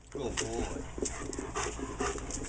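German Shepherd whining in a string of short, wavering whimpers of excitement, with a few panting breaths.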